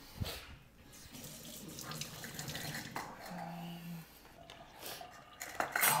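Kitchen faucet running water into the sink, a soft hiss that is strongest from about one to three seconds in.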